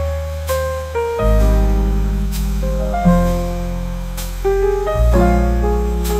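Slow instrumental jazz ballad: piano melody and chords over upright bass notes, with a soft cymbal stroke about every two seconds.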